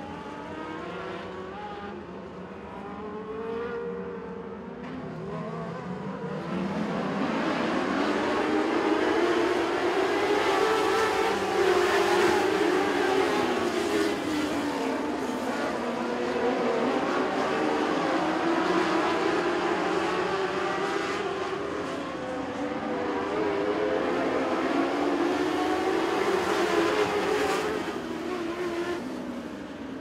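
A pack of Mod Lite dirt-track race cars running on the oval, their engine notes rising and falling in pitch as they go around the track. The sound is louder from about six seconds in until near the end, as the field comes by.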